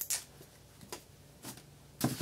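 A few light clicks and rustles of dimes and servo tape being handled by hand, about four short sounds with the loudest at the start.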